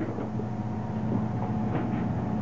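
Steady hum of the simulated spacesuit's backpack ventilation fans, blowing air through the hoses into the helmet.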